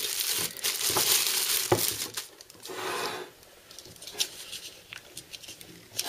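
Clear plastic bag crinkling and rustling as a liquid CPU cooler's pump block is pulled out of it. It is busiest in the first two seconds, with a short rustle about three seconds in, then only faint handling taps.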